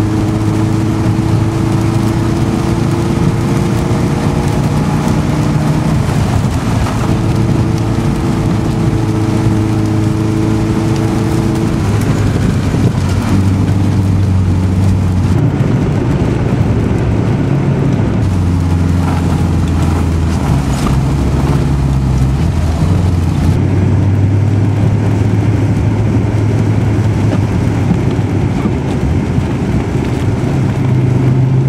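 Car engine running, heard from inside the cabin. Its note climbs gently over the first several seconds, then settles lower with a few steps in pitch, over a constant hiss.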